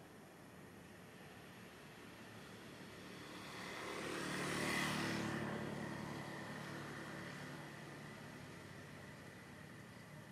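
A motor vehicle passing by: its engine and road noise swell to a peak about five seconds in, then fade away.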